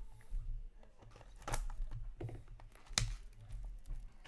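Wrapper being torn and crinkled off a small cardboard trading-card box and the box flap pulled open, with two sharp crackles about one and a half and three seconds in.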